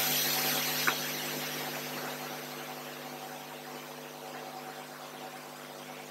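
Room tone: a steady low electrical hum with hiss that slowly fades, and one faint click about a second in.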